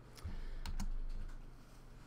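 A few quick computer key clicks in the first second, with a low thump of handling underneath, as the lecture slide is advanced.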